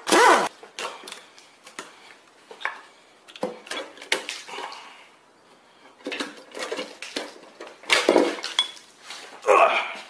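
Metal engine parts and tools clinking and clattering as a V8 cylinder head is taken apart by hand: scattered light knocks and clinks, with louder clatters near the end.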